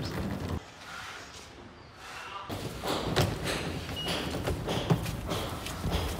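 Scattered thumps and knocks over a low background with faint voices. The sound drops off abruptly about half a second in and picks up again about two and a half seconds in.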